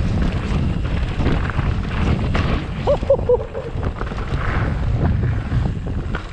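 Wind buffeting the camera microphone over the rumble and rattle of an Ibis Ripley 29er mountain bike rolling fast down a rocky dirt trail, tyres and frame clattering over stones. A brief higher-pitched sound comes about three seconds in.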